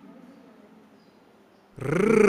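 Recorded voice of an interactive installation sounding out letters through loudspeakers: a drawn-out vocal sound fades away, and near the end a loud, drawn-out, growly 'R' sound starts abruptly, its pitch rising then falling, as the letter R is recognised.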